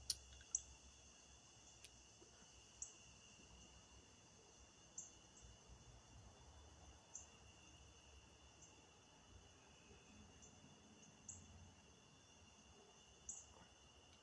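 Near silence with a faint, steady chirring of crickets, broken by a handful of faint, scattered clicks.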